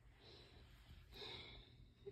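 Near silence with two faint breaths, the second starting about a second in and a little louder.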